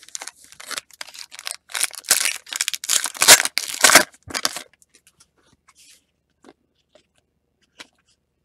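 A foil trading-card pack (a 2019 Topps Series 1 silver pack) being torn open, a quick run of crinkles and rips that is loudest about three to four seconds in and stops about halfway through, followed by a few faint ticks.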